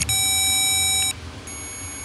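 Handheld electrical tester's continuity beeper sounding a steady high beep for about a second, then a fainter beep, as its probe bridges the terminals of the supercharger bypass valve solenoid. The beep signals near-zero resistance: the solenoid's motor winding is shorted.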